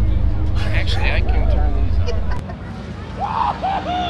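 Chevrolet Corvette V8 idling with a steady low hum, then switched off about two and a half seconds in.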